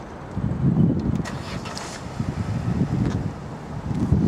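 Low, uneven outdoor background rumble with a few faint clicks about a second in.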